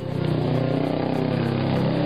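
Small motorcycle's engine running steadily as it rides past on the road.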